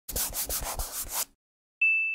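Intro sound effects: about a second of scratchy rubbing strokes, several a second, then a pause and a single high chime that rings out and fades.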